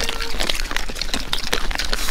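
Pigs crunching and chewing corn kernels close up, a dense run of crisp, irregular clicks.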